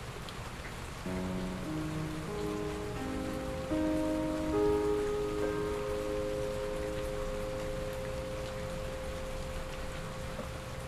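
Steady rain hiss with a Kawai NV10 hybrid digital piano entering about a second in: soft, slow rising groups of notes, each settling onto a long held note that rings on under the rain.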